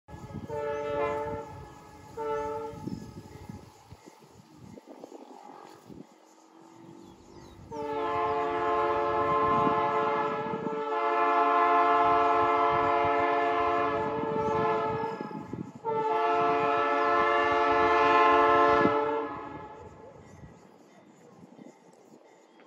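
Multi-note air horn of an approaching MRS GE AC44i diesel locomotive sounding: two short blasts in the first three seconds, then a long blast of about seven seconds and another of about three and a half seconds.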